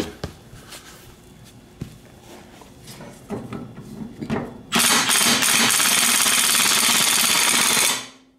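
Cordless Milwaukee M18 Fuel impact wrench hammering on a mower blade bolt in a rapid, steady rattle for about three seconds, starting suddenly past the middle. The bolt does not break loose at this setting, so the impact has to be turned up. Light clunks of the tool being positioned come before.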